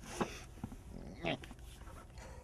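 Brief non-word vocal sounds from a person: two short bursts about a second apart.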